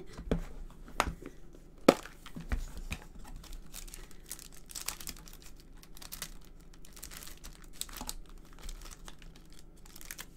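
Plastic packets of adhesive gems and pearls rustling and crinkling as they are sorted through in a clear plastic storage case, with scattered clicks and knocks; the sharpest knock comes just under two seconds in.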